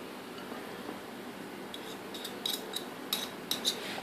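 Metal fork and spoon clinking in a glass bowl as butter is scraped off the spoon: a quick run of light, ringing clinks in the second half.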